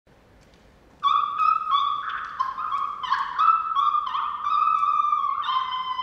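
A run of high, held notes, one after another with small slides between them, starting about a second in.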